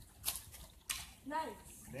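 A compound bow shot. A short hiss comes at the release, then a single sharp knock just under a second in as the arrow strikes.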